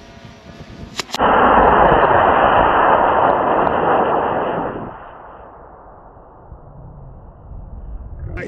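Model rocket's solid-propellant motor igniting with two quick pops about a second in, then a loud rushing hiss as it burns for about three and a half seconds before dropping away as the rocket climbs.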